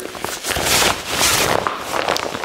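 Stiff nylon fabric of a Level Six Emperor drysuit rustling as the wearer works the wrist-gasket strap and moves his arms: a continuous rough rustle that swells twice.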